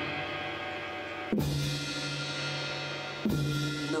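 Drum kit played with soft mallets: two strokes about two seconds apart, each leaving a low drum tone ringing under a long cymbal shimmer.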